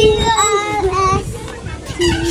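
A toddler's high voice in drawn-out sing-song calls, each note held and then sliding in pitch, with short breaks between them.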